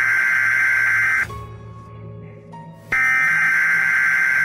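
Emergency-alert-style warning tone, loud and buzzing, sounding in two blasts of about two seconds each: the first cuts off about a second in, the second starts about three seconds in, with a low hum left in the pause between.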